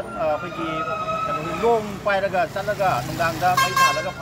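Vehicle horns on a busy street over a man talking: one held for about a second and a half, then a short, loud blast near the end.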